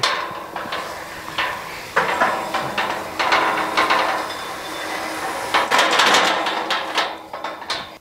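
Steel tube pasture gate being unlatched and swung open, rattling and clanking with many short metal knocks, busiest about two seconds in and again near six seconds.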